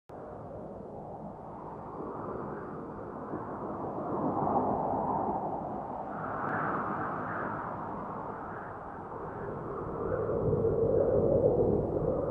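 A rushing, whooshing sound effect with a low rumble, swelling and ebbing in slow waves and growing loudest near the end.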